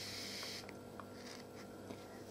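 Faint handling sounds: fingers and sewing thread rustling against a crocheted yarn toy, with a few light clicks, over a low steady room hum.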